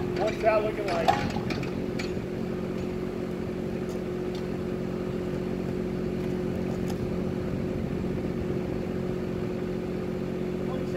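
Small diesel engine of a Kubota micro excavator running at a steady, even speed, with no revving.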